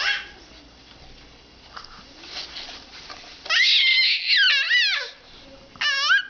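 A baby squealing: a loud, very high-pitched squeal lasting about a second and a half just past the middle, its pitch wavering up and down, and a short squeal near the end.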